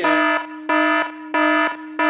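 Harsh electronic buzzer sounding in repeated blasts, about three in two seconds, with a fourth starting at the end. It is a penalty sound effect played to call out swearing.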